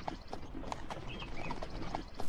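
Horse hooves clip-clopping at a steady walk as a carriage is pulled along, faint under a low rumble, about three clops a second.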